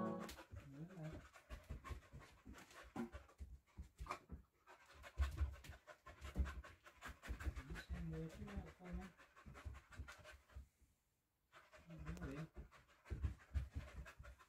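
English springer spaniel panting in short, irregular bursts, with a faint low voice murmuring now and then.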